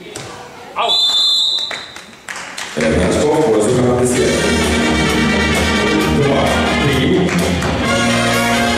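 A referee's whistle blown once, about a second in, as one long steady high note, ending the rally. Loud music starts just under three seconds in and plays on steadily.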